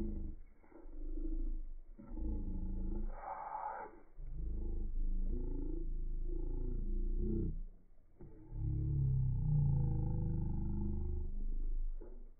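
Slowed-down sound track of a slow-motion recording: deep, drawn-out groaning sounds in several long stretches with short gaps, some gliding in pitch.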